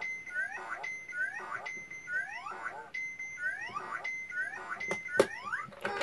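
Circuit-bent Playskool toy's sound chip chopped into a short loop by an added 40106 Schmitt-trigger oscillator. The fragment, a held high beep followed by a few rising electronic chirps, repeats a little more than once a second, with one sharp click near the end.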